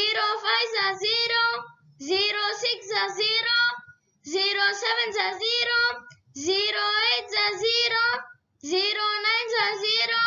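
A child's voice chanting the zero times table in a sing-song tone, with five short lines about two seconds apart, each in the pattern "zero fives are zero".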